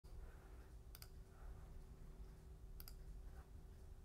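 Near silence: faint room hum, broken twice by a quick double click, about a second in and again near three seconds.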